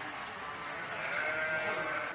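A flock of sheep bleating, with one long bleat from about a second in.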